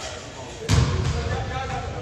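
A basketball bouncing on a hardwood gym floor: one loud bounce about two-thirds of a second in, with a booming echo in the hall.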